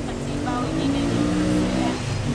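A motor vehicle engine running steadily close by, a low even hum with faint voices in the background.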